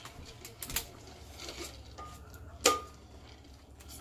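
Scattered light clicks and taps of hard ribbon candy pieces being handled in their plastic tray, with one sharp, briefly ringing clink about two and a half seconds in.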